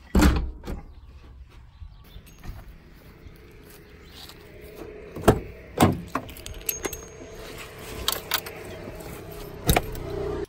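A uPVC front door with a lever handle pulled shut with a thump, then keys jangling and sharp clicks and clunks as a car door is opened, about five and six seconds in, with another sharp knock near the end.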